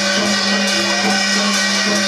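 Rajasthani folk music for the Gavri dance: a drum beaten in a steady rhythm over a constant low hum.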